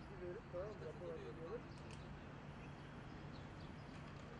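Faint outdoor ambience: indistinct distant voices for the first second and a half over a steady low hum, with a few faint high chirps afterwards.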